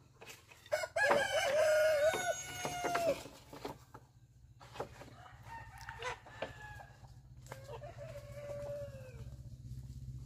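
A rooster crowing twice: a loud crow about a second in, held for about two seconds, and a fainter one near the end that falls away at its close. A few sharp knocks sound between the crows over a low steady hum.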